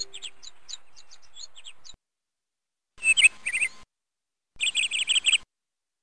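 Birds chirping in quick runs of short, sharp, high calls: a stretch in the first two seconds, then two brief bursts about three and four and a half seconds in, with dead silence between them.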